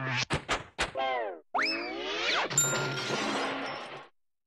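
Cartoon sound effects: a quick run of knocks in the first second, then falling pitch glides and a boing, followed by a noisy stretch that fades out at the end.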